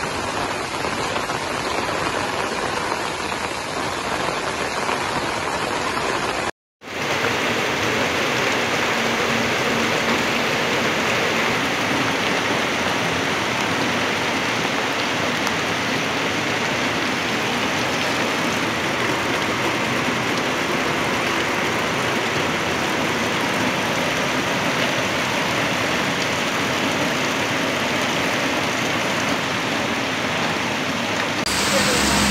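Torrential monsoon rain pouring down in a steady, dense hiss. The sound cuts out for a moment about six and a half seconds in, then the downpour continues a little brighter.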